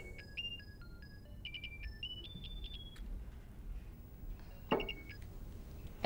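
Mobile phone ringtone: a melody of electronic beeps stepping up and down in pitch for about three seconds, with a short burst of it again and a click near the end.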